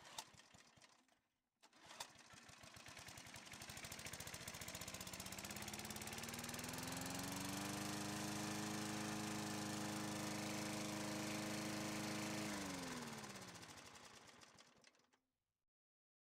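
A click about two seconds in, then a small motor or engine hum that rises steadily in pitch for about five seconds, holds a steady note, then winds down and stops about a second before the end.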